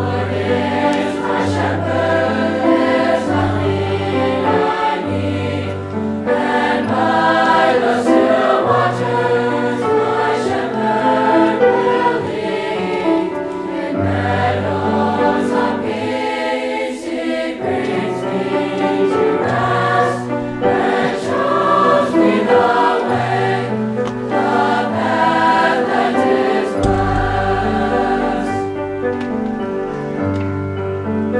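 A mixed school choir of boys' and girls' voices singing a sacred choral piece.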